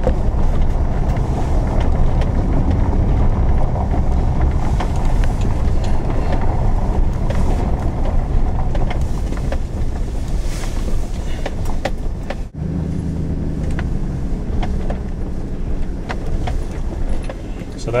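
Truck heard from inside the cab, driving slowly on a gravel lane: engine running under a steady low rumble of tyres and road noise. The sound drops out briefly about twelve seconds in, and then the engine hum goes on more evenly.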